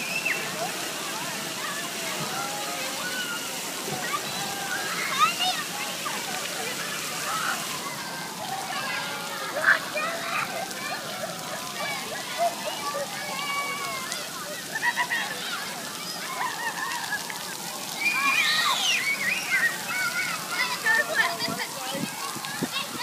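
Splash-pad water jets spraying and splattering onto wet pavement. Many children shout and chatter in the background, getting louder near the end.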